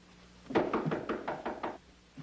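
Rapid knocking on a door: a quick run of raps starting about half a second in and lasting a little over a second.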